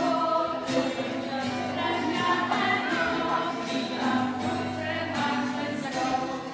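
A group of adults and small children singing a song together to a strummed acoustic guitar.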